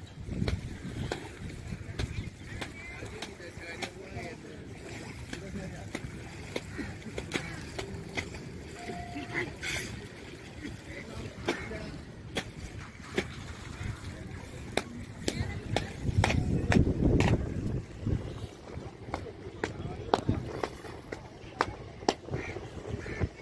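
Outdoor riverside ambience: people's voices in the background, sharp clicks and knocks scattered throughout, and a louder low rumble for a couple of seconds about three-quarters of the way through.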